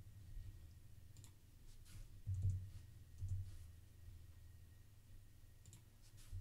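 A few faint, scattered clicks of computer keys being pressed while code is edited, with a couple of soft low thuds between them.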